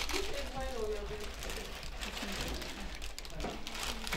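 Faint, indistinct voices talking in a small room, over a low steady hum.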